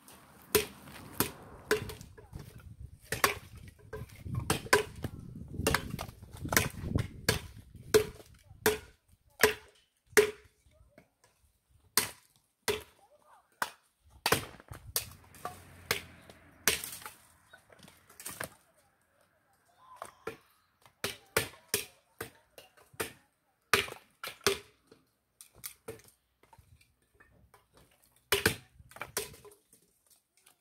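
Dry firewood branches being chopped with a hatchet and broken up: many sharp, irregular knocks and cracks of wood, thinning out briefly a little past the middle.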